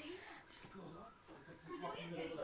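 Faint, breathy vocal sounds and soft grunts from a baby.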